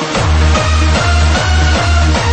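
Hardstyle/jumpstyle dance music: a heavy, booming kick drum comes in just after the start and hits on every beat, a little over two beats a second, under dense synth chords.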